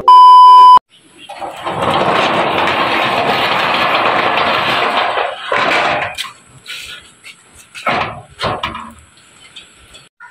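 A loud steady test-tone beep lasting under a second, from a TV colour-bars transition, then a loud even hiss for about four seconds. Near the end come a few sharp metal clicks and clanks from a steel gate latch being worked by hand.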